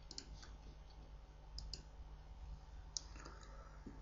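Very quiet room hum with a few faint clicks from a computer keyboard being typed on, one pair about a second and a half in and another near three seconds.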